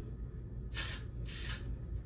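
Two short sprays from an aerosol hair-spray can held at a wig's hairline, a hiss less than a second in and another just after. A little spray is put on to hold the wig closure in place instead of glue.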